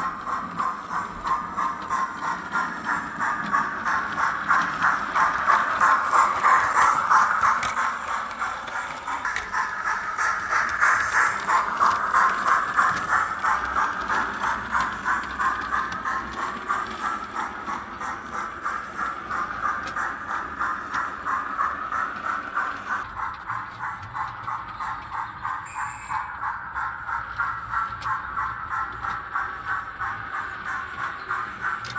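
Digital sound decoder in a Bachmann Precedent class model steam locomotive playing a steady rhythm of steam exhaust chuffs through the model's small speaker as it runs. The sound swells twice as the locomotive comes close.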